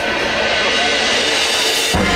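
Marching band opening its halftime show: a swelling cymbal wash with held high notes grows brighter and breaks off at the end as lower band notes come in.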